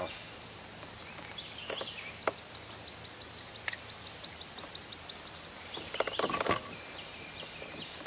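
Quiet outdoor ambience over open water, with a rapid run of faint high chirps or ticks a few seconds in and a brief louder rustle near the end.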